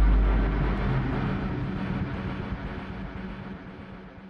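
Rumbling tail of a deep boom, fading steadily away over about four seconds.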